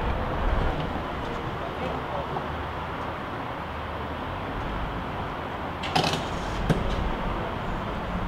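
Gas pump dispensing fuel: a steady rushing hum with a low rumble, with two short clicks about six seconds in.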